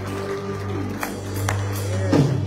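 Live worship band music with sustained chords over a held bass note. Two light taps come about a second in.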